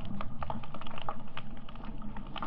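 Underwater recording full of irregular sharp clicks and crackles, several a second, over a low water rumble.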